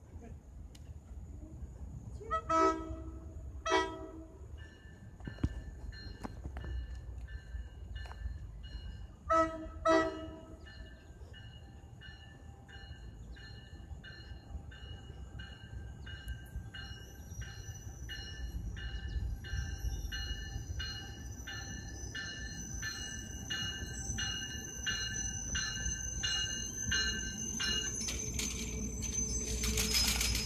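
Approaching train sounding its horn in two pairs of short blasts, about seven seconds apart, the loudest sounds here. A bell then rings steadily at about one and a half strikes a second while the train's rumble grows louder and a high whine comes in over the second half.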